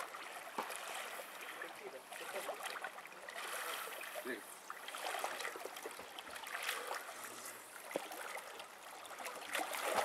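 Lake water splashing and swishing under a swimmer's breaststroke, in uneven strokes.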